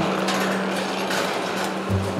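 Footsteps on steel-grating stairs with light clinks and knocks from safety harness lanyard hooks sliding along the metal handrail, over a steady low hum.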